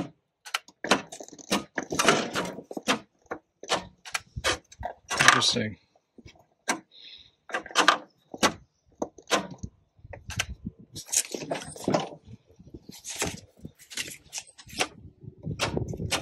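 Irregular clicks, knocks and key jangles from working the controls of a riding mower with its engine off, testing whether the cleaned PTO switch now passes power; no power reaches the PTO.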